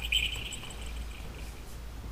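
A pause in a sermon filled by a steady low electrical hum, with a faint high tone fading out in the first half second.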